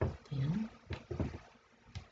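A person's voice in short mumbled sounds that carry no clear words, one gliding upward in pitch, with a sharp click near the end.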